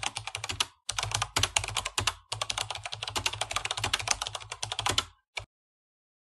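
Rapid computer-keyboard typing clicks, a typing sound effect laid over text being typed out on screen. They break off briefly about a second in and again at about two seconds, and stop just after five seconds with one last click.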